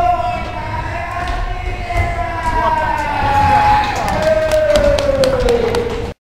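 A voice holding long, slowly gliding sung notes over a low rumble, with a run of sharp clicks and knocks in the last two seconds. The sound cuts off suddenly at the end.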